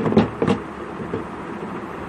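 Two short knocks from the treadle sewing machine about a quarter and half a second in, then a steady low background noise.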